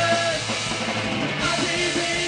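Live rock band playing: electric guitar, bass guitar and drum kit, steady and loud, in an instrumental passage between sung lines.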